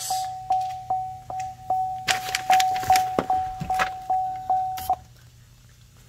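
Car's interior warning chime pulsing at an even beat of about two and a half chimes a second, then stopping about five seconds in. A patch of rustling from handling is mixed in partway through.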